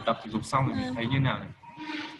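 A person's voice drawing out a wavering, wordless hesitation sound while searching for an answer, trailing off to a faint hum near the end.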